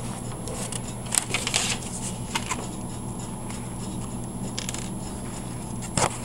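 A sheet of paper being picked up and handled, with a few short rustles over a steady low hum.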